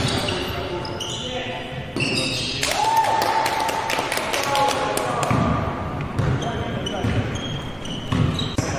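Sounds of a basketball game on an indoor court: the ball bouncing on the hardwood amid short knocks and players' voices, with one long drawn-out call near the middle.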